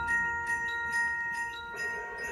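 Concert band in a soft passage: a few bell-like mallet percussion notes ring on, with light new strikes early on, fading before the end.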